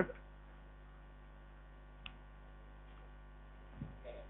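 Steady low electrical mains hum with no speech over it, and one short tick about two seconds in.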